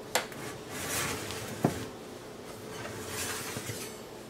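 Metal baking pan being slid out along a wire oven rack: scraping, with a sharp clank just after the start and another about a second and a half in.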